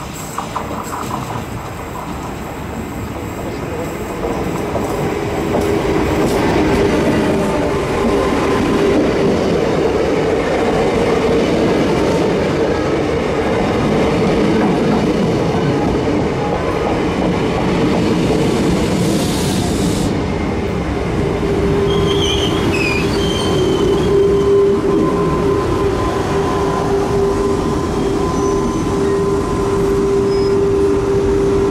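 Renfe series 450 double-deck electric commuter train arriving and braking to a stop, getting louder over the first several seconds. Short high squeals come from the wheels on the tight curve about two-thirds of the way in, and a steady whine grows towards the end as the train halts.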